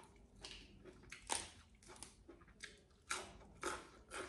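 Close-up eating sounds: a person biting and chewing crisp fresh raw vegetables. A run of short crunches comes through, the loudest about a second in and again near the end.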